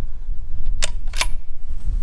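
A bolt-action sniper rifle's bolt being worked after a shot: two sharp metallic clicks about a third of a second apart, over a steady low rumble.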